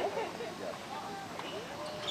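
Indistinct voices of people talking in the background, with no single voice standing out.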